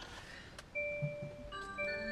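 Hyundai Ioniq Electric's start-up tune as the car is powered on: a short melody of chime-like bell tones. The first note comes about three-quarters of a second in, and more notes join and ring on together from about halfway.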